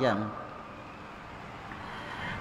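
A man's voice finishes a word, then a pause of steady, low background hiss.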